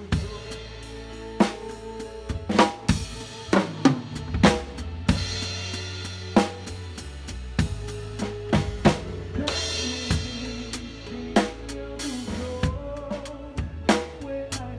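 Drum kit played live: a busy groove of snare and bass drum hits with tom fills, and cymbal crashes about five and nine and a half seconds in. Other instruments hold steady notes underneath.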